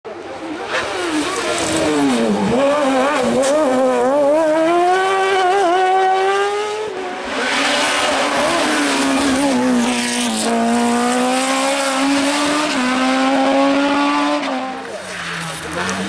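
Race car engines at high revs under hard acceleration, the pitch climbing steadily and falling back at each gear change, with tyres squealing.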